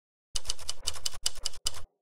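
Typewriter keys being struck in a quick run of about nine keystrokes, starting about a third of a second in and stopping just before the end.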